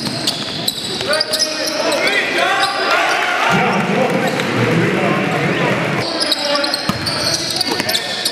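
Live basketball game sound in an echoing gymnasium: a basketball bouncing on the hardwood court amid shouting voices of players and spectators.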